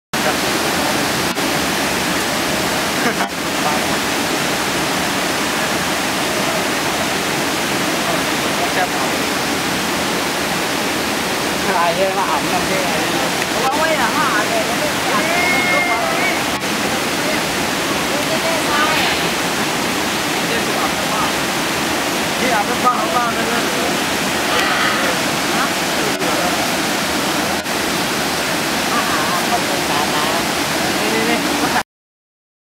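A three-tiered waterfall and the rapids below it, a steady loud rush of falling water. Faint voices of people talking come through now and then in the middle.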